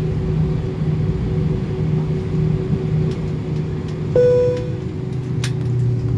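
Steady hum in an airliner cabin after landing, with a single chime about four seconds in that rings briefly and fades. Near the end the low hum shifts to a lower tone.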